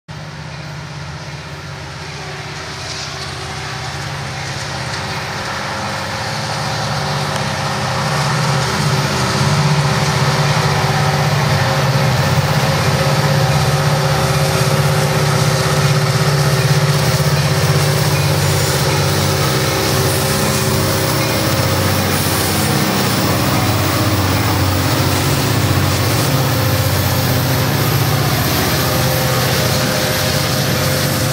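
Union Pacific diesel-electric locomotives approaching and passing, their engines a steady low drone that grows louder over the first eight or so seconds and then holds as they go by.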